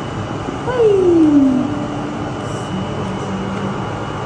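Steady, even background noise like a fan or air conditioning running, with a thin high whine over it. About a second in, a person's voice makes one short falling sound.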